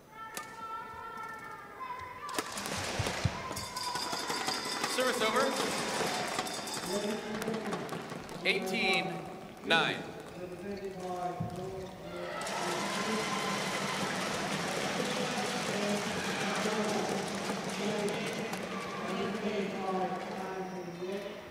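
Badminton rally in an indoor arena: rackets striking the shuttlecock and shoes squeaking on the court mat, with two sharp louder bursts near the end of the point. After the point, voices calling out.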